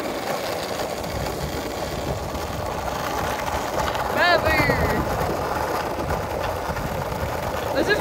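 Skateboard wheels rolling over rough, cracked asphalt: a steady rumble. A short vocal call cuts in about four seconds in.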